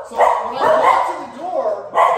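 Cocker Spaniels barking in a quick run of barks, set off by a knock at the front door.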